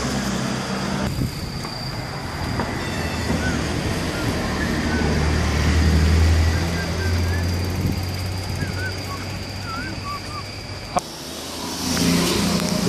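Street traffic ambience: the low rumble of a passing vehicle swells around the middle and fades, with faint high chirps over it and a short click near the end.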